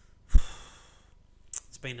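A man's sigh: a breath pushed out against the microphone about a third of a second in, a sudden low puff with a hiss that fades within a second.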